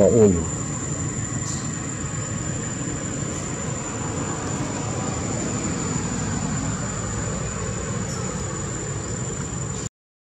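Steady insect drone with a thin, constant high tone over an even background hiss. A short cry falling in pitch comes at the very start.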